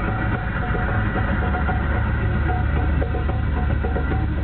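A car's engine and road noise heard from inside the cabin: a steady low drone.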